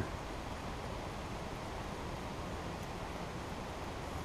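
Faint, steady outdoor background noise with no distinct sounds in it.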